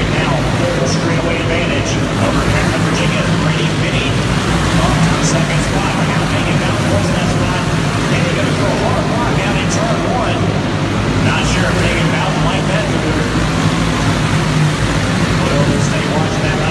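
A pack of racing karts' small engines running steadily as they circle an indoor dirt oval, with a babble of voices under it.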